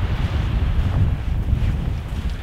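Wind buffeting the microphone: a loud, gusty low rumble that rises and falls, with a fainter hiss above it.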